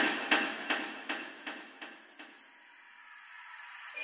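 Logo-reveal sound effect: a train of sharp metallic knocks, about three a second, loudest at the start and fading out by about two seconds in, under a high hiss that swells toward the end.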